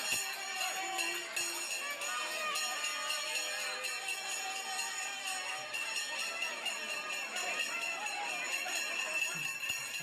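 Bells jingling and ringing steadily without a break, over a crowd of voices and procession music.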